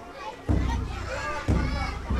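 Field recording of a Japanese festival: children's and people's voices chattering, with two deep, sudden low strikes about a second apart.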